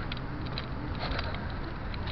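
Steady low rumble of outdoor city background noise, with a few faint clicks.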